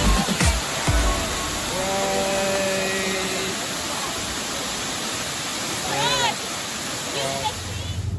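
Steady rushing of a rocky creek, with a brief voice about six seconds in.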